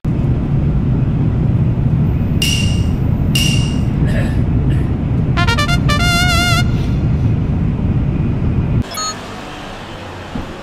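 Loud, steady low rumble of a train running at speed, heard from inside. Two short high beeps and then a quick run of rising tones sound over it midway. About nine seconds in the rumble cuts off to much quieter station ambience.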